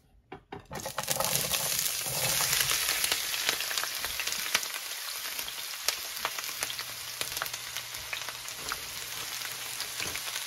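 Sliced green peppers and mushrooms hitting hot oil in a sauté pan and sizzling, with more vegetables (sliced onions) piled in as the frying goes on. A couple of light clicks come just before the sizzle starts about a second in; it is loudest for the next couple of seconds, then eases to a steadier crackle.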